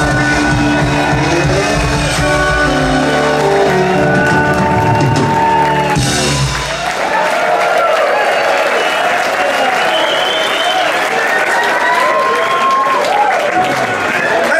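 A live band with electric guitars and drums holds its closing chord, which rings out and stops about seven seconds in. Audience applause and cheering with whistles follow.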